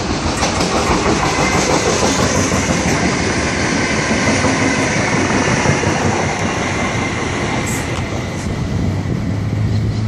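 NSW 80 class diesel-electric freight locomotives passing close by, engines running and wheels clattering along the rails in a loud, steady rumble. Near the end a low engine hum grows stronger.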